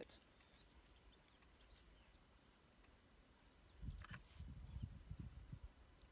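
Near silence with faint, high bird chirps in the background; from about four seconds in, low uneven rumbling and a few soft knocks on the microphone.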